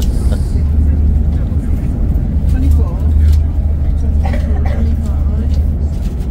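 Steady low rumble of a moving train heard from inside the passenger carriage, with other passengers' voices faint in the background.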